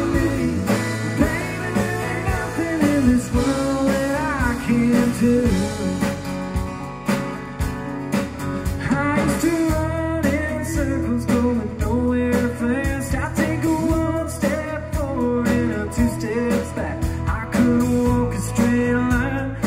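Live country band playing at full volume, with strummed acoustic guitar over a steady drum beat and wavering, bending melody lines.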